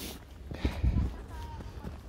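Hooves of walking horses landing on a soft dirt track, as a few dull, irregular low thuds.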